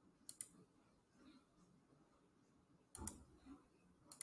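Computer mouse clicks over near silence: a quick pair of clicks just after the start and a louder pair about three seconds in.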